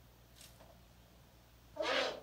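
Eurasian eagle owl giving one short call near the end, after a quiet stretch.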